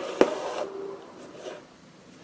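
Embroidery thread being pulled through fabric stretched taut in an embroidery hoop: a short rasping swish with a sharp tap near its start, then a couple of fainter brushing sounds about a second and a half in.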